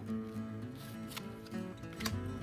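Quiet background music, acoustic guitar, with a faint click of trading cards being handled about a second in.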